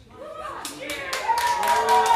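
Audience clapping and shouting, starting about half a second in and growing louder.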